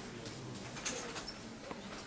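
Quiet room noise with a couple of faint short taps, one about halfway through and one near the end.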